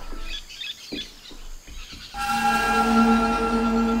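Cartoon forest ambience with small bird chirps, then about two seconds in a sustained chord of background music comes in and holds steady.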